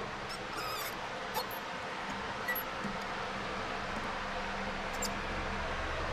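Light clicks and small metallic squeaks from hands working the wire-feed drive of a Lincoln Power MIG 260 welder: its pressure arm and drive rolls being set down on the wire. A cluster of clicks comes in the first second, then a few scattered ones, over a steady low hum.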